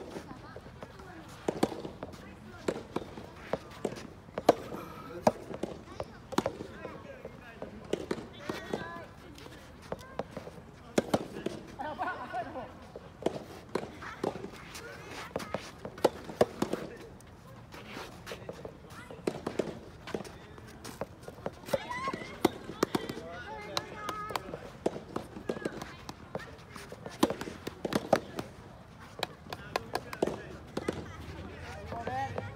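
Soft tennis rubber balls being struck by rackets in rallies, sharp pops at irregular intervals, some near and some from other courts, with players' voices calling in the background.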